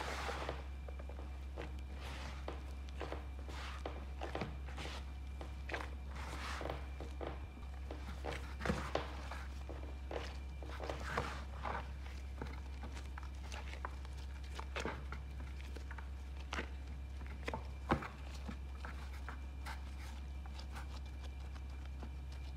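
Gloved hands kneading bread dough in a bowl: irregular soft squishes, slaps and rubbing of the dough, with a sharper slap a few seconds before the end, over a steady low hum.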